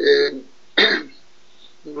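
A man clears his throat, two short bursts a little under a second apart, before he resumes speaking near the end.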